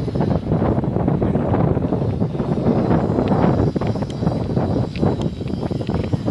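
Wind buffeting the microphone: a loud, uneven rumble that rises and falls.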